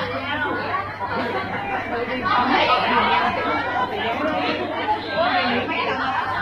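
Audience chatter: several people talking at once, overlapping voices with no music.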